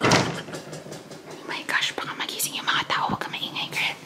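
Refrigerator door shutting with a thump, then soft whispering.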